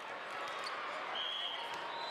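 Steady din of a large hall full of volleyball courts: indistinct voices, with balls being hit and bouncing on the courts. A short high whistle blast sounds about a second in.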